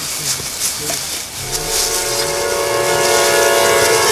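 Film-score drone: a sustained chord of several steady tones comes in about a second and a half in and slowly grows louder.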